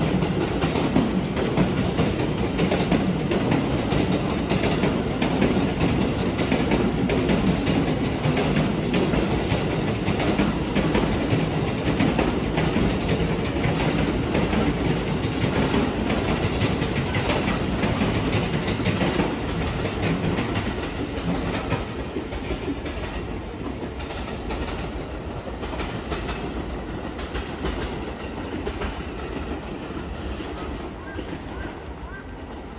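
Electric train running on the station tracks: a steady rumble with wheels clicking over rail joints, gradually fading in the last third.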